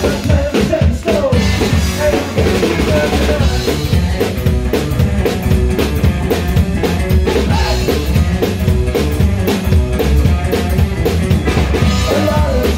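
A live psychobilly band playing: drum kit to the fore, with electric guitar and upright bass, loud and unbroken.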